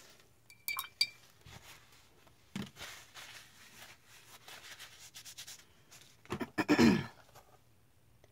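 Art supplies clinking and rattling as they are handled, with a couple of sharp, ringing clinks about a second in and softer ticking after. A short burst of voice comes near the end.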